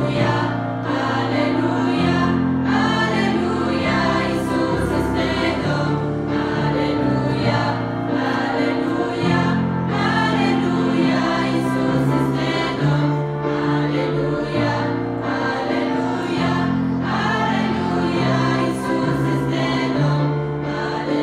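A church choir of young women singing a Romanian hymn in parts, with instrumental accompaniment holding low notes that change every second or two.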